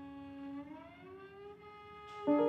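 Cello playing softly with the bow: a held note that slides slowly upward in pitch about halfway through.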